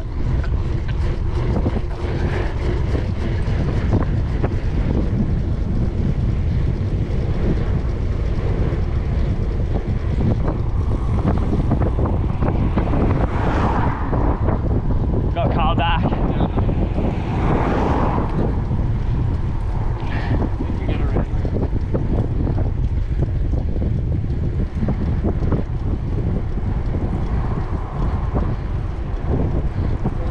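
Wind buffeting the microphone of a bicycle-mounted camera during a fast downhill ride: a loud, steady rush with a heavy low rumble throughout.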